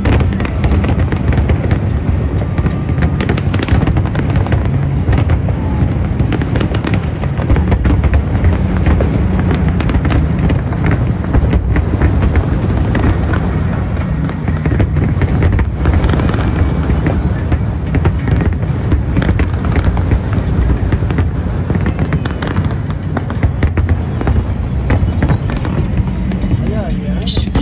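A fireworks display going off without pause: a dense stream of sharp cracks and pops over a heavy low rumble.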